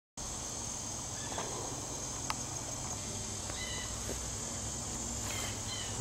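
Steady high-pitched chorus of insects, with a few short chirps and a single click a little over two seconds in.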